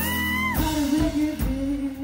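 A live band playing: a lead singer over electric guitar, bass guitar, drums and keyboards. A high held note bends down and stops about half a second in, then the voice carries on in short lower phrases.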